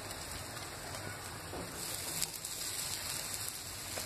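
Oil sizzling on a hot tava as spice-coated raw banana slices are laid on it one by one, a steady hiss.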